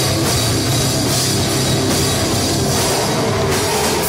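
Metalcore band playing live: electric guitars and drum kit at full volume, loud and dense without a break.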